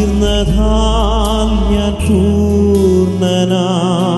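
A man singing a slow worship song into a microphone, his voice wavering with vibrato on long notes, over instrumental accompaniment with sustained low notes that drop away about three seconds in.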